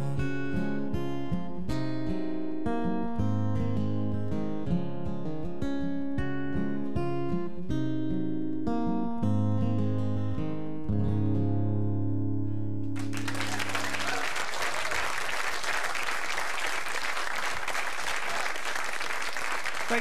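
Solo acoustic guitar playing the closing instrumental bars of a song, picked notes ending on a chord that rings out. About thirteen seconds in, a studio audience breaks into applause that carries on.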